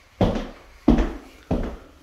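Footsteps on a floor: three evenly spaced, heavy steps at a walking pace.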